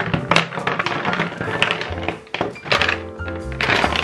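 Plastic lipstick and lip-gloss tubes tipped out of a clear acrylic box, clattering and knocking onto a wooden tabletop, over background music.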